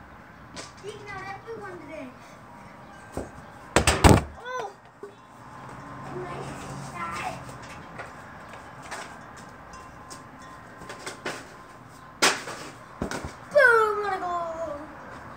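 A child's short wordless calls and shouts, with several loud sharp knocks: a double knock about four seconds in and two more near the end.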